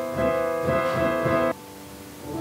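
Piano playing a few sustained chords, struck several times, then cutting off suddenly about one and a half seconds in.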